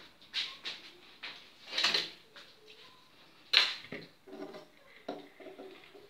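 Handling noise from a plastic mixing bowl being moved about on a tiled countertop: three separate knocks and scrapes, the sharpest and loudest a little past halfway.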